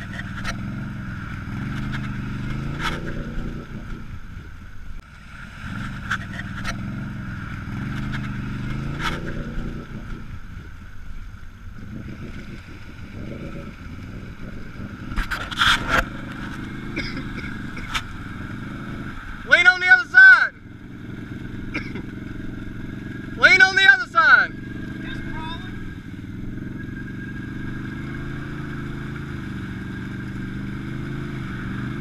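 ATV engine revving up and falling back again and again as the quad churns slowly through deep mud. Two loud, short shouts break in about two-thirds of the way through, a few seconds apart.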